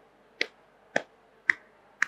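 Sharp percussive clicks keep time for a devotional chant, three of them about half a second apart. They carry on the steady beat through the pause between sung lines.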